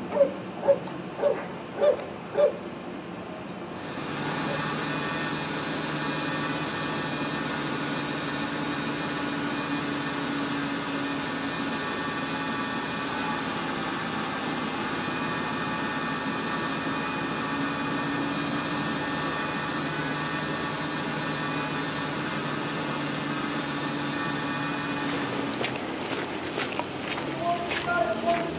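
A dog barking five times, about a bark every half second, then from about four seconds in a steady engine-like hum at a fixed pitch that stops near the end.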